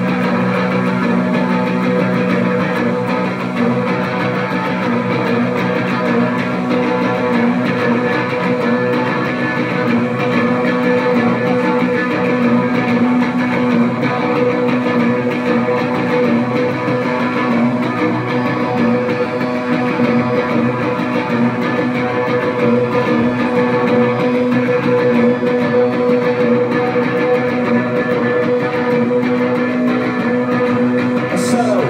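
Live rock band playing an instrumental passage with no singing: electric guitars hold steady, ringing chords over bass.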